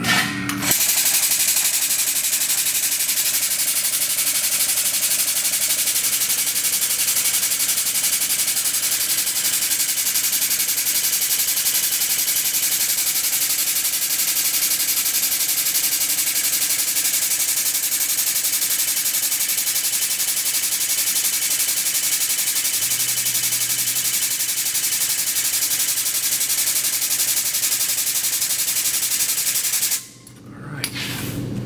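Shop press pump running with a steady, fast mechanical chatter as the ram forces a new wheel bearing onto a 1964 Lincoln Continental rear axle shaft. It starts about a second in and cuts off sharply at the end.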